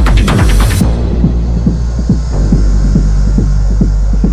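Techno music: a driving beat with a rising build cuts out sharply about a second in, leaving a sustained deep bass drone under a soft, steady low pulse.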